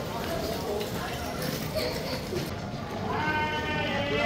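Street ambience with faint voices, then about three seconds in a person's voice calling out in one long, high, drawn-out shout.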